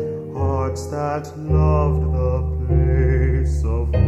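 Male solo voice singing over instrumental accompaniment with held low bass notes. About three seconds in he holds a note with vibrato.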